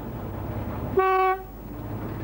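A Ffestiniog Railway narrow-gauge diesel locomotive's horn gives one short toot about a second in, over the steady rumble of the moving train.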